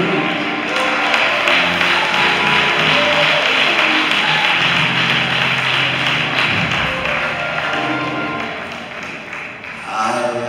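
Church music with held chords, under a dense wash of congregation clapping and voices calling out.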